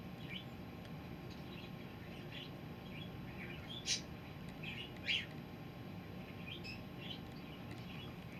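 Small birds chirping: scattered short, high calls, with two louder chirps about four and five seconds in.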